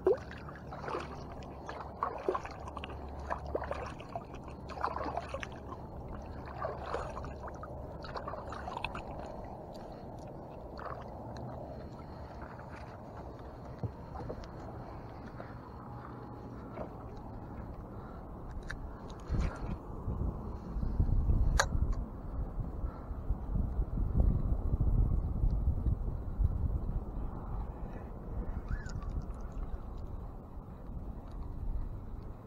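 Water sloshing and splashing against the side of a small skiff, with short splashes over the first several seconds as a released trout goes back into the water. From about twenty seconds in, a low rumble rises and holds for several seconds.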